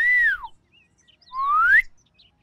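A person whistling two short notes: the first bends up and then slides down, the second slides upward.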